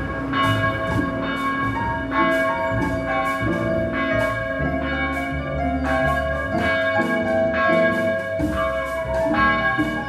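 Church bells ringing: several bells struck over and over in a continuing peal, their tones overlapping and ringing on between strikes.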